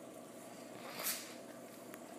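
Water trickling and splashing steadily into a reef aquarium sump while an old-saltwater pump empties it during an automatic water change. There is a brief louder rush about a second in.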